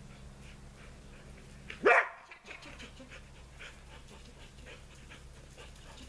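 A dog gives one short, loud bark about two seconds in, rising sharply in pitch. Otherwise only faint background sound.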